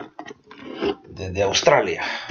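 Speech only: a person talking in short phrases with brief pauses in between.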